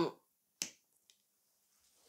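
A single sharp click a little over half a second in, followed by a much fainter tick; otherwise near silence.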